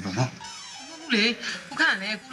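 A man's voice speaking film dialogue, his pitch bending and wavering.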